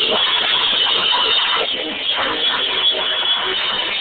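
Grind metal band playing loud and continuous: harsh vocals shouted into a microphone over heavily distorted electric guitar.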